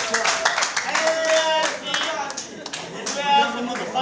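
Audience clapping with voices calling out over it; the clapping thins out about halfway through.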